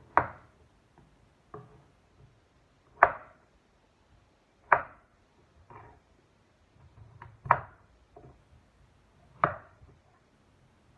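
Knife chopping down onto a cutting board in slow, uneven single strokes: a sharp knock every two seconds or so, with softer taps between.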